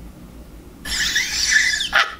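A loud, high-pitched scream starts about a second in, with a wavering pitch.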